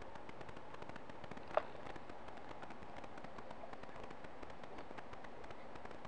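Steady hiss from a low-quality camera microphone, with faint scattered clicks and one brief sharp sound about one and a half seconds in.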